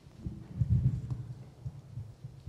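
Irregular low bumps and knocks at a wooden lectern and its microphone as people move about there, loudest in a cluster about half a second to a second in.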